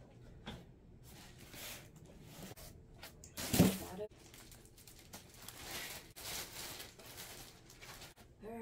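Packaging being handled: plastic wrapping rustling and cardboard and parts of a standing desk converter being moved, with one loud thump about three and a half seconds in.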